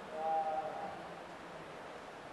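Steady background noise of a large hall, with a faint held tone in the first second that fades away.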